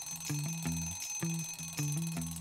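Alarm-clock bell ringing steadily as a timer sound effect, marking a countdown running out, over background music with low repeating notes.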